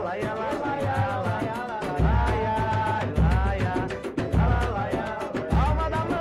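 A pagode group playing a samba live: a lead voice sings over a busy hand-percussion pattern and strummed accompaniment. From about two seconds in, a deep bass drum hits roughly once a second.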